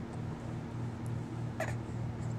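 A six-month-old baby's short, high whine that falls in pitch, about one and a half seconds in, over a steady low hum.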